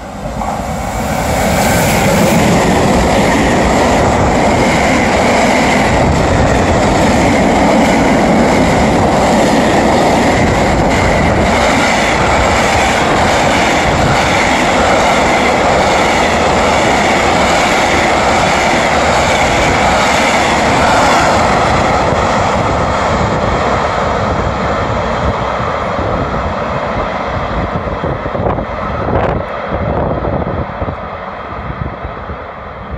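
Electric-hauled container freight train passing through a station at speed: the locomotive arrives about a second in, then a long steady rumble and clatter of wagon wheels on the rails, easing off over the last several seconds as the end of the train goes by.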